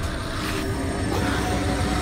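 Film-trailer sound design: a loud, steady low rumble with a hiss above it.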